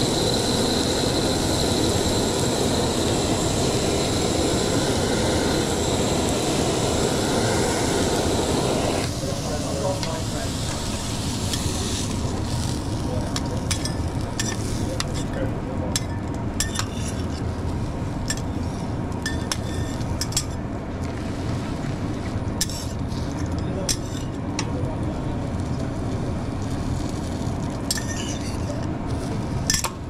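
Handheld butane kitchen torch burning over an omelette on a flat-top griddle, a steady hiss with a thin high whistle that cuts off about nine seconds in. After that the griddle sizzles quietly while metal spatulas click and scrape on the steel plate.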